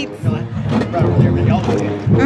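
Marching band playing: held brass notes over a drum beat, with people talking close by.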